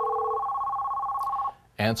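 Electronic ringer of an AT&T office desk phone trilling on an incoming internal call: two high tones warble rapidly together, over a lower steady tone that stops less than half a second in. The ringing cuts off about one and a half seconds in as the call is answered.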